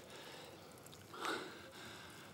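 A man's short, breathy exhale about a second in, over a faint steady hiss.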